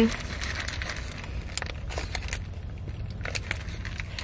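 A person chewing a burger, with scattered small clicks and light crinkling of its paper wrapper, over a steady low rumble.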